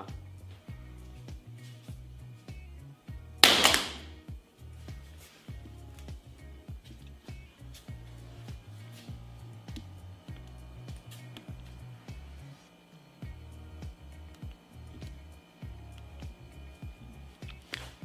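Background music, and about three and a half seconds in a single short, sharp impact: an iPhone 8 dropped from ear height hitting the floor.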